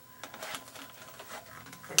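Revolver being drawn out of a stiff, thick leather holster lined with rawhide: a run of light scraping and clicking of metal on leather, ending in one sharp click.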